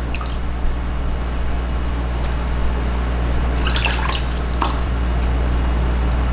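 Water dripping and splashing into a metal bowl as a wet cloth is wrung out and dipped over it, with a few short splashes, over a steady low hum.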